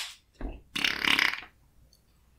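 The tail of a single hand clap, struck as a sync marker, at the very start. About half a second in comes a short, rough throat sound lasting about a second, like a burp.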